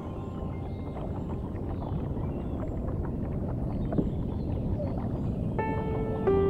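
Small water splashes and lapping around a kayak over a low wind rumble on the microphone, with one sharp knock about four seconds in. Background music fades out at the start and comes back in near the end.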